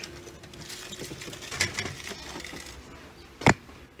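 Quiet rustling and scraping as an artificial log hide is handled and lifted off its suction-cup ledge inside a glass terrarium, with one sharp knock about three and a half seconds in.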